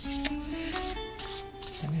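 A deck of tarot cards being shuffled overhand by hand: several quick papery swishes as the cards slide and rub against each other, over soft background music.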